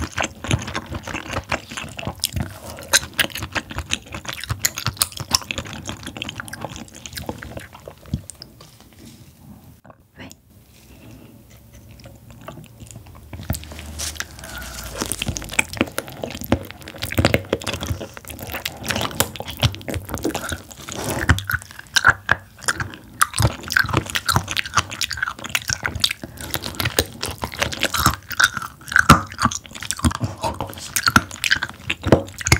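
Close-miked biting and chewing of whole raw abalone: crisp, crunchy bites mixed with wet chewing and mouth sounds. There is a quieter lull of a few seconds about a third of the way in, then sharper crunching bites return.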